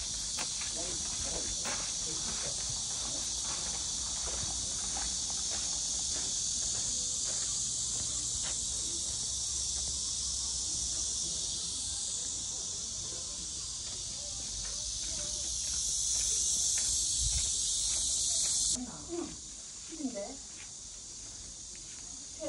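A dense chorus of cicadas buzzing, high-pitched and steady, swelling a little before dropping suddenly to a quieter level near the end.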